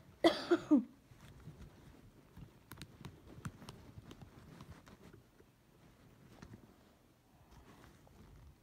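A single cough at the start, then faint scattered small clicks and rustling as toy crutches are fitted onto a doll by hand.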